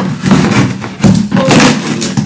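Handling noise from unpacking and fitting together a new mop at floor level: several thumps and knocks with clatter between them.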